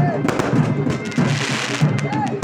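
Aerial fireworks bursting: a series of sharp pops, with a spell of dense crackling from the burning sparks about a second in.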